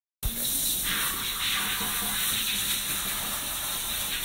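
Shower water spraying steadily onto a wet corgi in a tiled wash tub, a continuous hiss that grows brighter about a second in.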